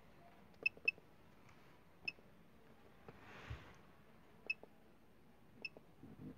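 Five short electronic beeps from a CJ4 handheld automotive scan tool as its buttons are pressed, the first two close together near the start. A soft rustle comes midway.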